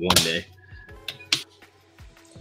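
A single sharp plastic click, as of a tackle box or its tray being handled, over faint background music.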